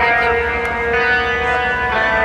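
Metal band playing live through a large PA: held, ringing guitar chords, changing chord about a second in.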